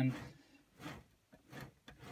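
Faint swishes of a hand pushing and spinning the jog wheel of a Pioneer CDJ-2000NXS2, with the jog adjust turned to its strongest setting, which gives far more friction. There are a few short soft swishes, one about a second in and two near the end.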